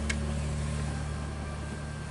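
Low held notes from a live band's instruments and stage amplification, slowly fading out as the music dies away. A single faint click comes just after the start.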